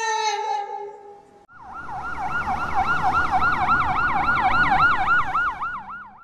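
A held musical note fades out in the first second. Then an ambulance siren starts in its fast yelp, rising and falling about three to four times a second, over the low rumble of the vehicle on the road.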